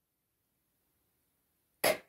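Silence, then near the end a woman's voice gives one short, breathy 'k': the sound of the letter C, spoken on its own.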